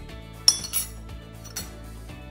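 A metal measuring spoon clinking against a stainless steel mixing bowl while spice is tapped out: one sharp, ringing clink about half a second in, then a few lighter clinks.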